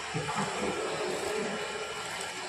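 Workshop machines running together in a steady mechanical din, with no single event standing out.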